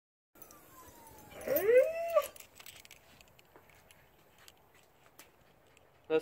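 Akita Inu dog vocalizing: a thin falling whine about a second in, then a short howl-like call that rises and falls and stops abruptly.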